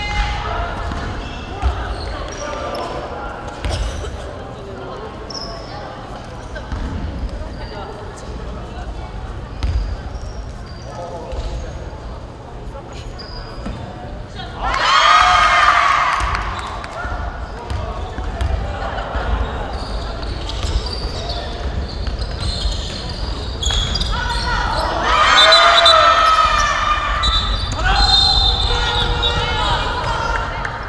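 A basketball bouncing on a gym floor during a women's basketball game, with low thuds throughout. Loud shouting voices rise about halfway through and again near the end.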